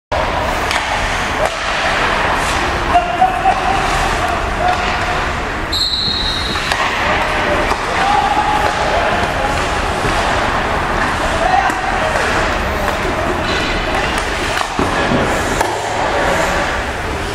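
Indoor ice hockey practice: pucks knocking off sticks and into the boards in sharp, repeated cracks, a cluster of them about three seconds in, over a steady din of players' and coaches' distant voices in the arena.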